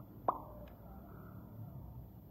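A single sharp mouth pop or tongue click made close to the phone's microphone about a quarter of a second in, followed by a much fainter click, over low room noise.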